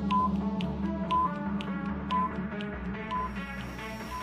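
Countdown background music with a short high beep about once a second, timing the wait for an answer.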